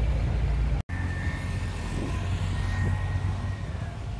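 Outdoor background noise: a steady low rumble that drops out for an instant about a second in, after which a faint, steady high whine runs under it.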